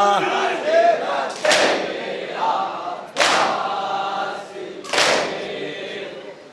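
A crowd of Shia mourners performing matam, beating their chests in unison: three loud collective slaps about a second and three-quarters apart, echoing in the hall, with the group's voices chanting between the strikes. The lead reciter's sung nauha line ends just at the start.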